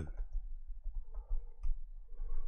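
Faint clicks from working a computer keyboard and mouse, with one sharper click about three-quarters of the way through, over a steady low hum.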